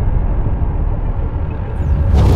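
Deep low rumble of a cinematic logo-intro sound effect, the lingering tail of a shattering boom, easing slightly; a brief high sweep comes near the end.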